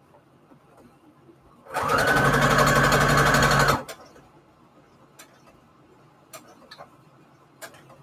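Brother sewing machine stitching fabric onto a paper index card in one fast run of about two seconds, starting about two seconds in and stopping abruptly. A few faint clicks follow as the work is handled.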